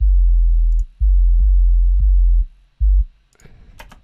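A soloed synth sub bass, a hip-hop style sub, playing three deep notes: two long ones, then a short one that ends a little after three seconds in. Each note starts with a slight click. A few faint clicks follow near the end.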